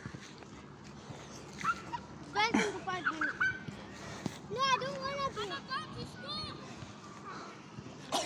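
Children's shouts and calls at a distance, a few short high-pitched yells rising and falling in pitch, loudest around the middle.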